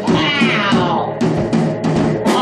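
Free-form drum kit playing, with irregular cymbal and drum strikes, under a wordless, cat-like vocal from the microphone whose pitch slides downward in long sweeps.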